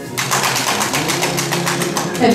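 Applause, with hands clapping close by in a rapid, even run of about ten claps a second, starting suddenly just after the beginning.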